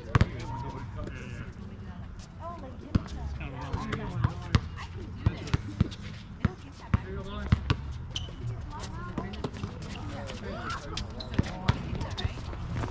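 Basketball bouncing on an outdoor hard court during a pickup game: sharp, irregularly spaced thuds through the whole stretch, with faint shouts and talk from the players.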